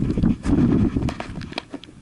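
Low rumble of wind and handling on the microphone, with many sharp clicks and knocks as the camera is pushed in among the car's seats and trim. The rumble dies away about one and a half seconds in.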